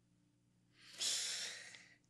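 One audible human breath, a hissy rush of air lasting about a second, starting a little under a second in.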